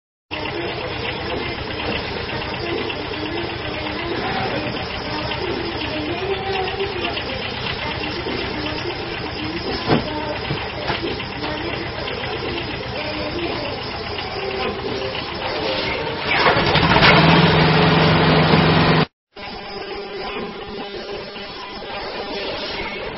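Mini excavator engine running under varying load, its pitch wavering up and down as the arm digs. There is a single sharp knock about ten seconds in. From about sixteen seconds it runs louder and higher for a few seconds, then breaks off briefly.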